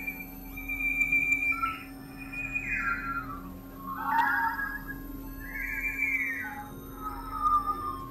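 Synthesizer playing a string of pitched tones that slide and bend, several falling in pitch, over a steady low hum.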